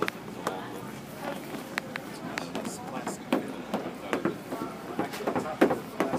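Indistinct voices of people talking nearby, with scattered sharp clicks and taps.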